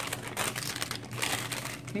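Plastic packaging crinkling as it is handled, a dense run of irregular crackles.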